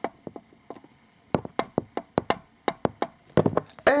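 Small toy robot figures being handled and knocked together by hand: a string of irregular light clicks and taps, closest together in the middle and late part.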